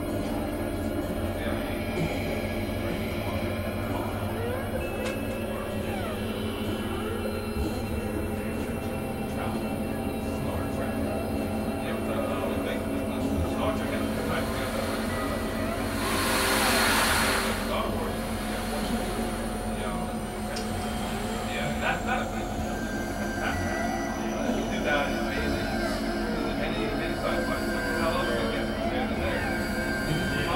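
Experimental electronic drone music: many steady synthesizer tones layered together, with sliding pitches weaving through. A swell of hiss rises about sixteen seconds in and dies away after two seconds.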